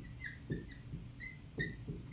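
Dry-erase marker writing on a whiteboard, giving a series of short high squeaks as it forms letters.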